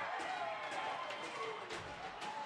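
Ice-rink ambience with faint, distant voices and shouts from players and spectators.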